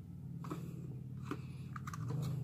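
Light handling of a small toy drone and its lithium-polymer battery: a few soft plastic clicks and taps, about half a second in, just past the middle and near the end, over a low steady hum.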